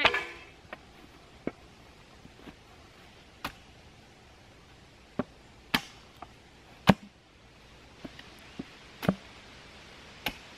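Small hatchet chopping into the lower end of a wooden stick held upright on a stump, tapering it to a point for a stake: a dozen or so sharp, irregularly spaced strikes, the loudest about seven seconds in.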